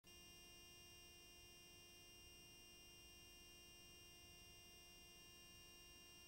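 Near silence: a faint steady hiss and hum.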